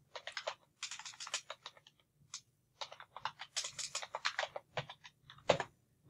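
Typing on a computer keyboard: quick runs of key clicks, with a pause of about a second near the middle.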